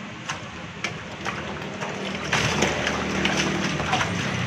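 Live fish thrashing in shallow water in a metal tank, splashing: a few short splashes, then a louder, longer run of splashing in the second half.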